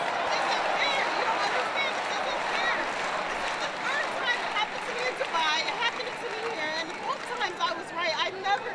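Tennis arena crowd: many spectators talking and calling out at once, a dense babble of voices with no single speaker standing out.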